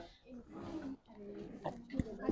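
A faint, low murmured voice in two short stretches, with the faint scratch of a marker writing on a whiteboard.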